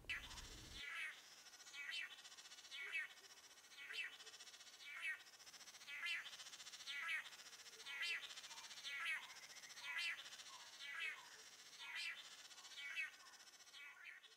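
Faint animal calls, a short call repeated steadily about once a second, around a dozen times.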